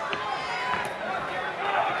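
Boxing arena crowd: many spectators shouting and calling out at once, their voices overlapping in a steady din.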